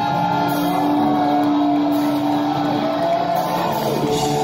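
Live metal band playing loud, distorted electric guitars holding long sustained notes, then a note bending in pitch near the end.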